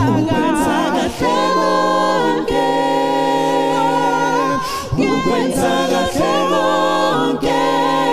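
A cappella gospel vocal group singing in harmony: several voices hold chords under a lead line sung with vibrato. The phrases are separated by short breaks.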